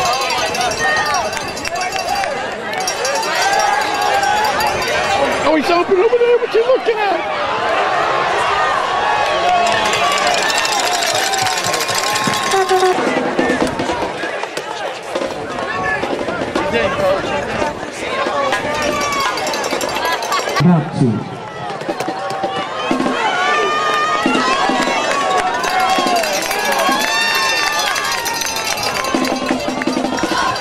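Spectators at a football game: many voices talking and calling out over one another in a fairly loud, continuous crowd babble.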